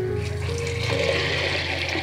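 Water poured from a terracotta pot into a black clay pot onto sprouted moth beans: a steady rush of water that builds toward the middle and thins out near the end.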